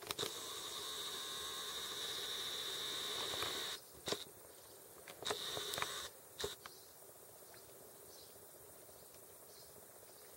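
A camera's zoom-lens motor whining steadily for about three and a half seconds, then again briefly, with a few sharp handling clicks between.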